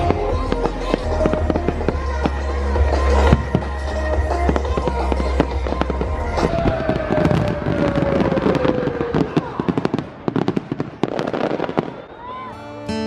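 Fireworks display: aerial fireworks going off in repeated bangs and crackles, with the crackling growing denser and more rapid about halfway through.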